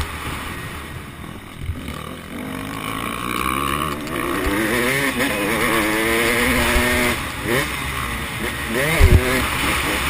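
Onboard motocross bike engine revving up through the gears with wind rushing past the helmet, the pitch climbing for several seconds, then dropping and rising again in short throttle blips. A low thump about nine seconds in, the loudest moment.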